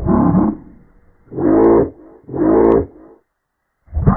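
Pitched-down, muffled logo-jingle audio with effects applied. A sound breaks off about half a second in. Then come two short pitched tones about a second apart, then silence.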